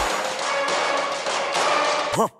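Electronic background music, a steady stretch without the heavy bass hits that fall just before it.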